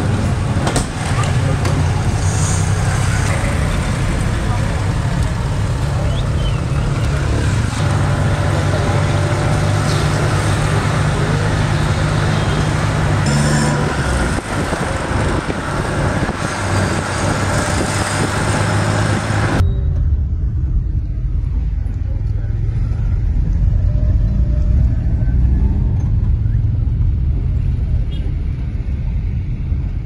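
Street and traffic noise, loud and steady. About two-thirds of the way in it changes abruptly to the low engine and road rumble heard inside a moving van's cabin.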